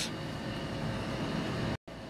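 Steady background hiss and low hum, like a fan or ventilation running, with a brief total dropout near the end.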